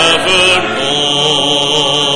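A voice singing a hymn in church, settling into one long held note about half a second in.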